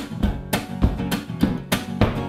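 Acoustic guitar strummed in a steady rhythm, about three to four strokes a second over sustained low notes, with no singing.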